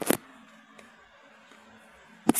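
A single sharp knock right at the start, then a faint steady low hum.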